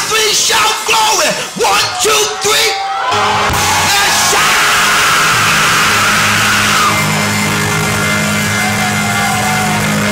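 A preacher yelling and shouting into a microphone over a church PA for about three seconds. Then a sustained low music chord, most likely organ or keyboard, holds steady while a long, loud shout rings out over it.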